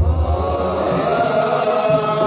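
A group of Ethiopian Orthodox clergy chanting a wereb hymn together in male voices, with a deep low sound under the voices for the first half second or so.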